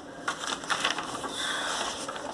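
Paper rustling as textbook pages are turned, an irregular crackle with a few sharper ticks.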